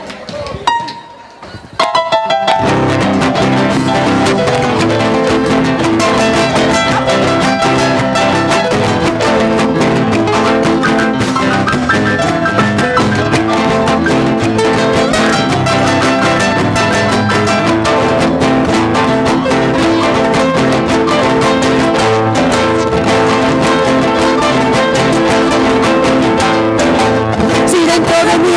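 Live band playing the instrumental introduction of a song on guitars over percussion with a steady beat, starting in full about two seconds in after a short guitar lick.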